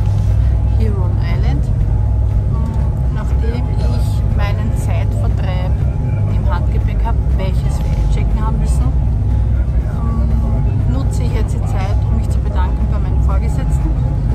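A passenger ferry's engines droning steadily and low inside the cabin, with a person talking over them.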